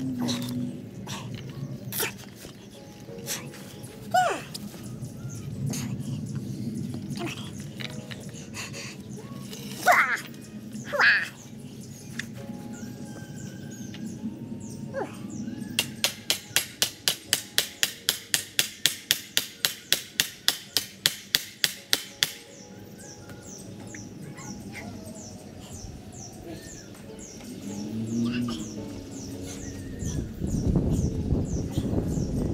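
Aerosol marking-paint can being shaken, its mixing ball rattling in a fast even run of about five clicks a second for roughly six seconds. Birds chirp now and then before it.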